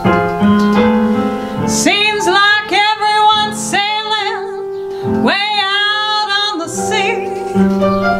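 A woman singing a ballad over piano. The piano plays alone at first; from about two seconds in she sings several held, wavering notes, the last and longest ending near seven seconds, and the piano carries on alone to the end.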